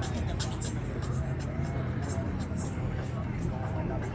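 Car engines running with a steady low sound, under crowd voices and faint music.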